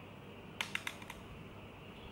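A quick run of about five light clicks, a little over half a second in: a small tapered makeup brush tapping against an eyeshadow palette as it picks up colour.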